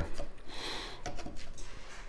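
Knife slicing through a seared sous vide chuck roast on an end-grain wooden cutting board: a short scraping noise about half a second in, then a few light clicks as the blade meets the board.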